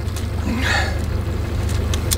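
Boat's outboard motor running at trolling speed, a steady low hum, with a short faint breathy sound a little past the middle.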